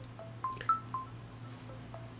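A quick string of short pitched pings, about eight in two seconds, each starting with a sharp click and jumping between a few different pitches, over a low steady hum.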